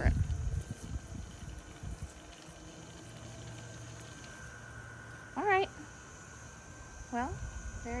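Faint, steady electric hum of a Mammotion Luba 2 robot lawn mower's motors as it drives across the grass. A voice makes two brief hums, about five and seven seconds in.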